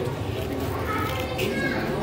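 Background chatter: several voices talking at some distance, with no single close speaker.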